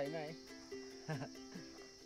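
Crickets chirring in a steady, high-pitched, even drone.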